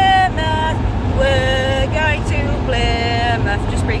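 A female voice singing a wordless tune in held, stepping notes over the steady low rumble of a Mazda Bongo campervan's engine and road noise in the cab.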